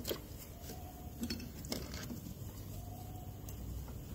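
Faint handling sounds: a few light clicks and rustles as hands fit a ribbed drive belt onto the power steering pump pulley in a car engine bay.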